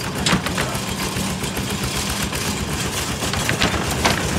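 Single-cylinder diesel engine of a two-wheel walking tractor running steadily while pulling a loaded trailer over a rough dirt track, with a few sharp knocks and rattles from the trailer.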